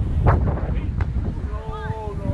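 Strong wind buffeting the camera microphone with a steady low rumble, broken by two sharp slaps of a beach volleyball being played, about 0.7 s apart. Near the end a player calls out with a long, held shout.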